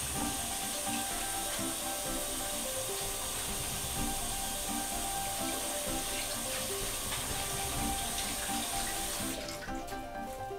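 Kitchen mixer tap running into a stainless steel sink as hands are washed under the stream, with a steady splashing hiss. The water shuts off suddenly near the end.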